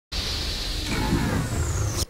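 Opening sting of a TV sports news show: a rushing whoosh effect over a low rumble, starting abruptly. A high whistle falls in pitch through the second half, and the sound cuts off suddenly at the end.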